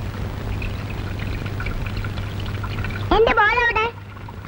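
Water running from a tap into a wash basin, then about three seconds in a high voice calls out in one long, wavering call.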